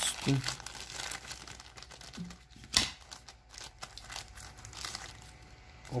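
Thin clear plastic zip-lock bag crinkling as fingers pull it open and handle it, in a run of irregular rustles, with one sharp snap about three seconds in.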